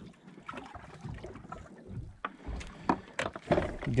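Water splashing and lapping beside a boat as a small red grouper is reeled to the surface and lifted out, with a few sharp clicks, more of them in the second half, and wind on the microphone.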